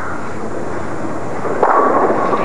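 A bowling ball rolling down a wooden lane with a steady rumble, then crashing into the pins for a strike about a second and a half in.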